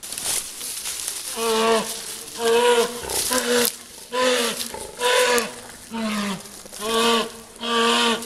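Young brown bear caught by a wire snare on its leg, bawling in distress: a call about once a second, each with a low, bending pitch.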